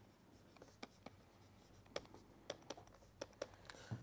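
Faint, scattered ticks of a stylus tapping and sliding on a pen tablet while handwriting, about eight small clicks spread unevenly over a few seconds.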